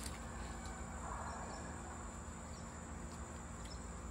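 Quiet outdoor background with a steady, high-pitched drone of insects.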